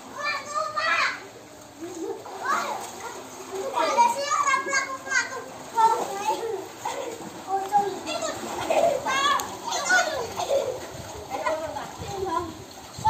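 Children shouting and calling out to each other as they play in water, with some splashing of water.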